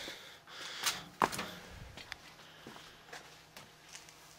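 Quiet handling noise from a heavy sheet-metal microwave oven cover being moved and set down: a few short swishes early, then several small light clicks and knocks, with a brief 'ah' from the person about a second in.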